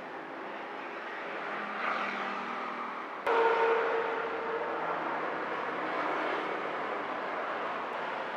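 Passing road traffic, cars and motorcycles going by, with a swell about two seconds in and a sudden jump in level a little over three seconds in.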